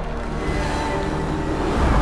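Background music under a rush of noise that grows louder toward the end.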